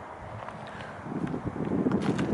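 Wind buffeting the camera microphone: a low, uneven rumble that swells over the second half.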